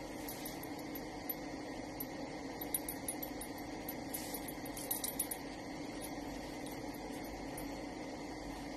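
Light clicks and taps of a small plastic food container as a toy poodle eats from it, a few scattered around the middle and a cluster about four to five seconds in, over a steady low room hum.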